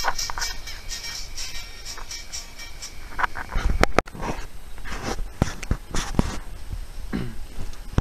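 Music with a regular beat played through the electric arc of a 555-timer-driven, audio-modulated flyback transformer (a plasma speaker), with the arc's hiss underneath. The sound cuts out for an instant about halfway.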